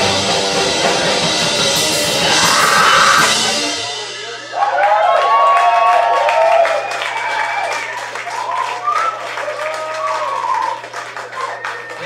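A live punk band plays loud, with drums, bass and guitar, and stops abruptly about four seconds in. The crowd then shouts and cheers with scattered clapping, over a steady low hum from the amplifiers left on.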